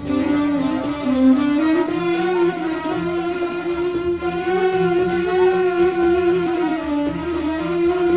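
Instrumental music: a bowed string instrument, violin-like, plays a slow melody in long held notes over a lower sustained accompaniment.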